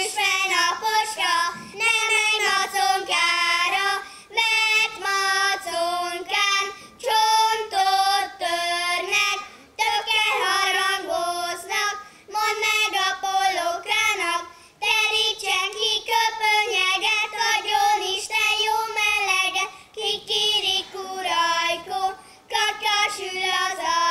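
Three children singing a song together in unison, without accompaniment, in short phrases with brief breaks for breath.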